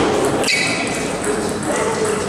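Table tennis ball clicking sharply off bat and table about half a second in, followed by a brief high ringing ping, over a steady murmur of voices in a large hall.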